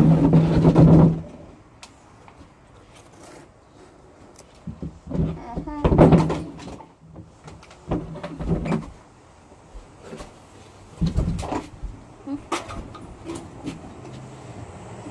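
Bumps and rubbing of a phone being set down on a table, loud in the first second. After that come short bursts of muffled hums and vocal noises from people with water held in their mouths, about four times.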